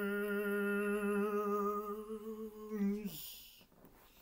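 A man's voice holding one long hummed or sung note with a slight waver. It drops in pitch and stops about three seconds in, followed by a short breathy rush of air.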